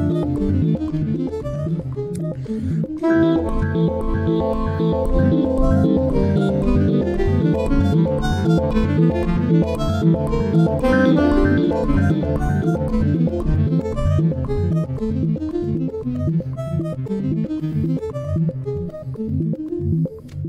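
Live electronic groove: a steady pulsing bass beat under saxophone lines processed in real time by computer, with runs of notes over the beat.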